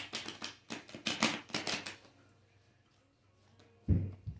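Tarot cards being shuffled by hand: a rapid run of card flicks and slaps for about two seconds, then a single thump near the end.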